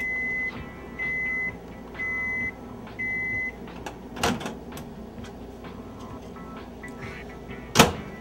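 Microwave oven beeping four times, one long high beep per second, signalling that its cycle has finished. About four seconds in there is a clunk at the microwave, and near the end a sharp, loud bang, the loudest sound here, from its door being handled.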